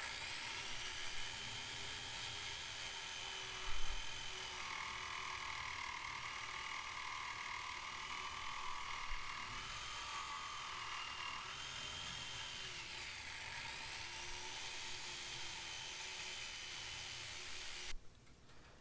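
Corded electric jigsaw running steadily while cutting a handle cutout in a wooden panel, its motor whine wavering a little in pitch as the load changes. A brief louder knock comes about four seconds in.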